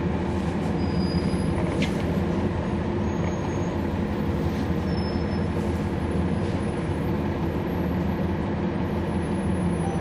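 Cabin sound of a 2011 NABI 40-SFW transit bus on the move: its Cummins ISL9 inline-six diesel engine running steadily as a low drone, with road noise and a few faint squeaks and rattles.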